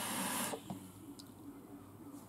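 A long inhale drawn through an Augvape Druga RDA vape: a steady airy hiss of air pulled through the atomizer that stops about half a second in.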